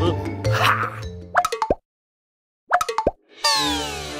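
Children's background music gives way, about a second in, to a few quick cartoon 'plop' sound effects with falling pitch. After a short dead silence come two or three more plops, and then a falling glissando of several tones near the end.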